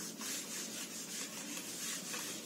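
Faint rubbing and scratching of a pen writing on paper, in short repeated strokes.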